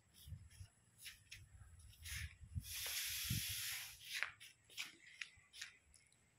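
Faint rustling and small clicks, like a handheld phone brushing through mango leaves, with a steady hiss lasting a little over a second near the middle.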